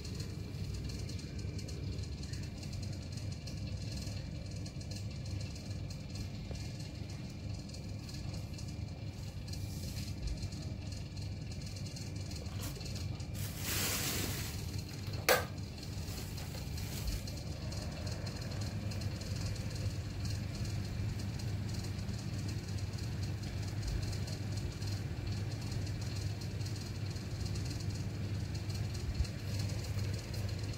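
Steady low hum and rumble of background room noise. About halfway through comes a brief rustle of handling, ending in a single sharp click.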